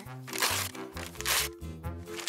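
A newspaper being torn up in two short bursts, over light background music.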